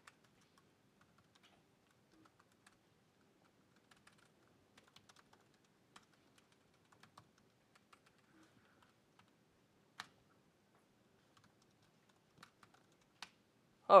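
Laptop keyboard being typed on: faint, irregular keystrokes with short pauses between them, one sharper keystroke about ten seconds in.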